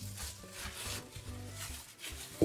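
Crinkling of a small clear plastic bag being handled, over soft background music.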